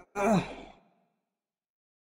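A man's short sigh-like vocal sound, falling in pitch and lasting about half a second, then dead silence.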